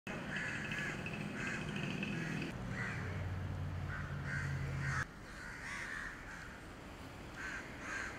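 Birds calling over and over in short calls about every second, over a low steady hum that stops abruptly about five seconds in.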